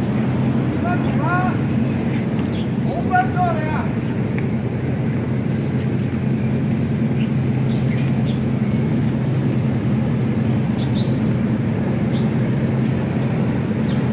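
Small harbour ferry's diesel engine running with a steady low drone close by, while a voice shouts in two short bursts in the first few seconds.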